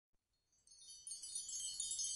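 Shimmering chimes: many high, bell-like tones overlapping, fading in about half a second in and growing louder.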